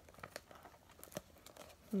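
Cardboard mailer box being handled and picked open with long fingernails at its taped seal: a few faint crinkles and light clicks, spaced irregularly.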